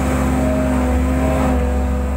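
JCB 135 skid steer loader's diesel engine running steadily, heard from inside the cab as a loud, even low hum.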